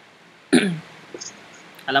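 A man clears his throat once, a short burst about half a second in that drops in pitch, and then speech begins near the end.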